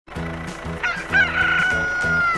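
A rooster crowing: a short first note, then a long held note, over light background music.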